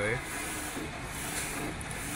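Large-format inkjet printer running, its print-head carriage travelling back and forth over the film with a steady mechanical hiss and rub.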